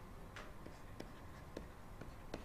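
Faint pen strokes writing out an equation by hand: a few short, irregular scratches and taps as symbols are added.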